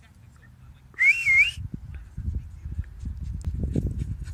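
A person whistling a short wavering call, about half a second long, about a second in, calling the beagle in. After it, low rumbling and thumping noise on the microphone builds as the dog runs up.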